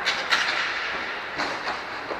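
Inline skate wheels rolling on the rink floor, with sharp clacks of hockey sticks striking, the loudest just after the start and again about a second and a half in.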